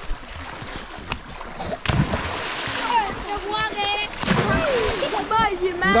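Children swimming and splashing in a river, water churning in bursts, the strongest about two seconds in and again past the four-second mark. Children's high-pitched shouts and calls come through over it.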